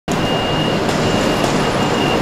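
A city bus pulling out of a bus terminal, its engine running under a steady wash of traffic noise, with a thin high-pitched tone sounding on and off.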